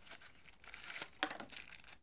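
Plastic packaging and a thin cardboard box crinkling and rustling as they are handled and opened, with a few sharper crackles about a second in.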